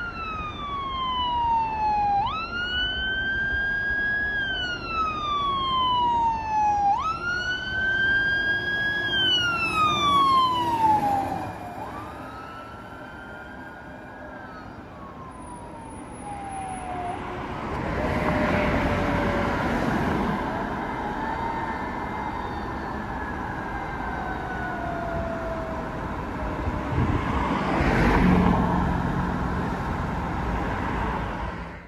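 Fire engine siren wailing in slow rising-and-falling sweeps as the truck approaches. About twelve seconds in it passes, and the wail drops lower and fades away into the distance.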